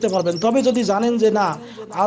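Only speech: a man's voice talking.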